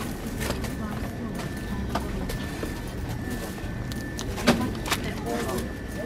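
Shop interior ambience: a steady background hum with a faint high whine, indistinct voices, and a few sharp clicks and rustles.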